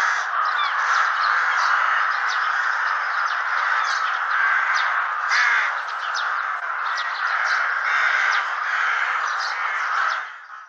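A flock of rooks cawing together, many harsh calls overlapping in an unbroken chorus, with short higher calls scattered above it.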